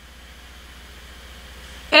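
A pause with only a faint, steady low background hum, then a voice starting right at the end.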